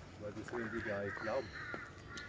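A bird calling in the forest: a rapid series of short, harsh calls starting about half a second in.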